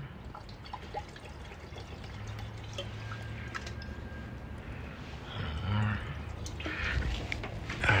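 Sea Foam fuel treatment pouring from its plastic bottle into a car's fuel filler neck, a steady pour.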